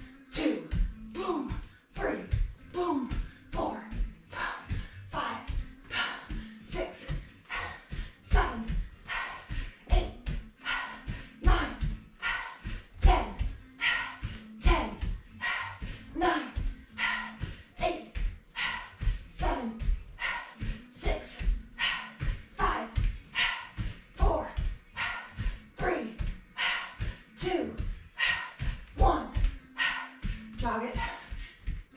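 Rhythmic short, sharp exhalations and grunts from a woman doing repeated side kicks and backfists, with thuds of bare feet landing on an exercise mat over a wooden floor, over and over at about one to two a second.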